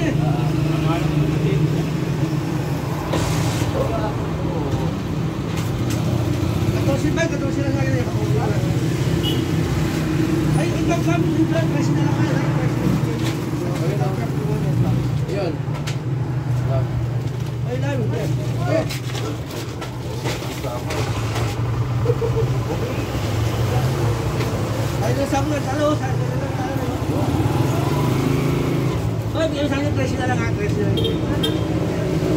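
A motor, most like an idling vehicle engine, running with a steady low hum, with people talking in the background.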